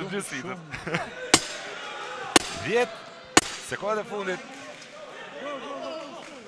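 Three sharp knocks exactly a second apart at a boxing ringside, typical of the timekeeper's ten-second warning that the round is about to end, over voices and commentary.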